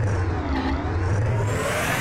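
Bowling ball rolling down a lane: a steady low rumble with a sweeping whoosh that falls in pitch and then rises again about halfway through.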